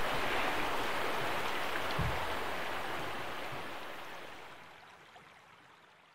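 Running water of a small creek, a steady rush that fades out over the second half, with a soft low thump about two seconds in.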